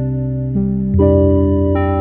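Soft background piano music: held chords, with a new chord struck about a second in.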